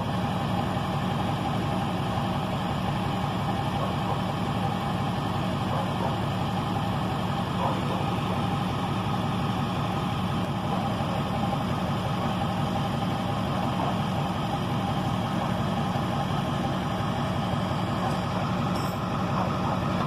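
Tow truck's engine idling steadily, an even low drone with no change in pitch.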